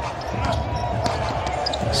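Broadcast game sound from a basketball arena: a steady crowd murmur with a basketball bouncing on the hardwood court.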